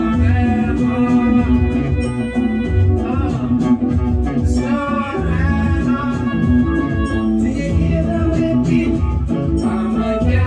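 Recorded song with a male voice singing over guitar and bass, with a steady low beat.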